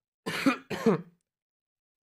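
A man clearing his throat twice: two short bursts in the first second, about half a second apart.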